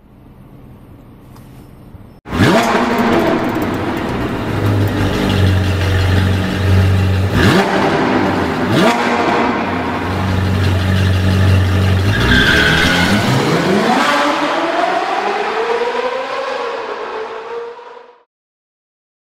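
Sports car engine sound effect. After about two quiet seconds it comes in suddenly and runs steadily with two quick revs, then speeds up with rising pitch and cuts off abruptly at the end.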